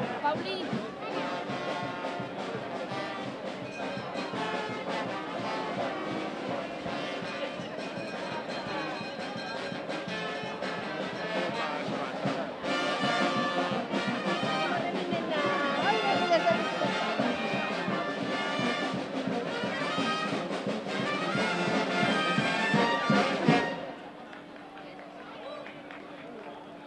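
Brass band music with trumpets and trombones, which stops abruptly a couple of seconds before the end, leaving a quieter background hum.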